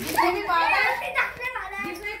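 Girls' excited, high-pitched voices as they play, calling out and exclaiming without clear words.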